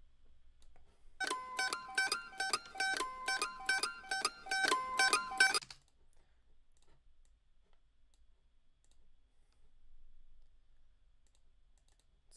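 A recorded mandolin loop in A minor playing a quick hammered-on melody of plucked notes for about four seconds. It starts about a second in and cuts off suddenly, followed by a few faint clicks.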